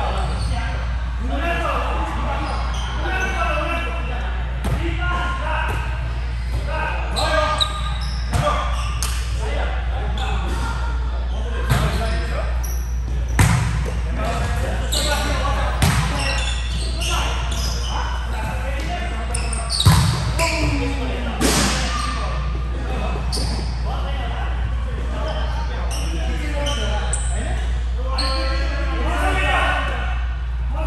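Volleyball being struck and hitting the floor during a rally, a series of sharp echoing smacks, the loudest a little past the middle. Players' voices are heard between the hits, over a steady low hum.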